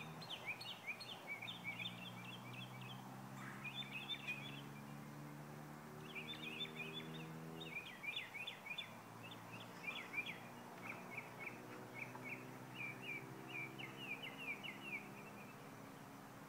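Birds chirping in quick runs of short notes, over a faint low steady hum.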